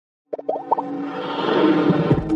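Animated-intro sound effects and music: a quick run of short rising plops about a third of a second in, then sustained synthesized music.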